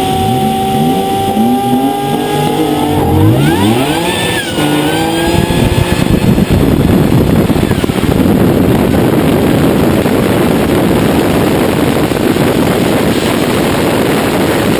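Drag race car engine heard close up from a hood-mounted camera. It revs in quick blips, then in rising sweeps. From about six seconds in, the sound turns into a loud, even rush of engine and wind noise with no clear pitch.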